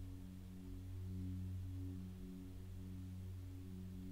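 Faint meditation background music: a low, sustained drone of several steady tones that swell and fade in a slow pulse about once a second.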